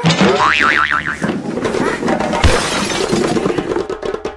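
Cartoon slapstick sound effects: a wobbling spring-like boing in the first second, then a crash with a low thud about halfway through.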